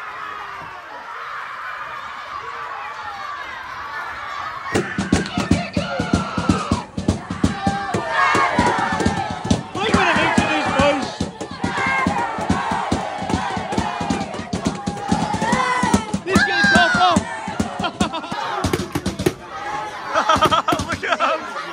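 A group of boys chanting and shouting football songs, softer at first. From about five seconds in comes a loud rapid drum beat, with the shouted chanting rising over it.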